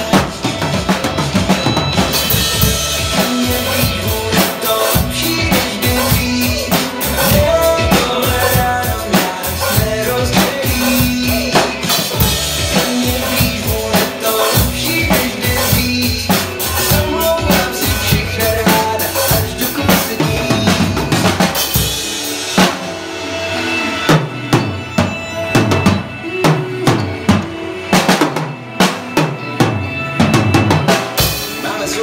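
Sonor acoustic drum kit played to a recorded pop-rock backing track: a driving kick-and-snare beat with cymbals over the music. A little past two-thirds of the way through, the backing's low end drops out and the individual drum hits stand out sharply.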